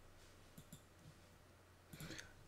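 Near silence with a few faint computer mouse clicks, the sharpest near the end.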